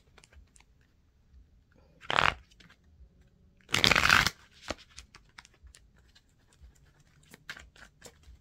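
A tarot deck being handled and shuffled: two short, louder riffling bursts about two and four seconds in, with faint card clicks and taps between them.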